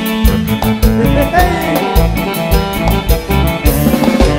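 Live band playing an up-tempo Latin dance tune: keyboard, electric guitar and drums with a quick, steady beat.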